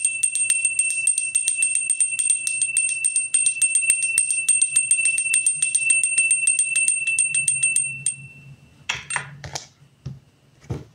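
Small handbell shaken rapidly, about seven strikes a second, with a steady high ring. It stops about eight seconds in and rings out, followed by a few soft knocks near the end.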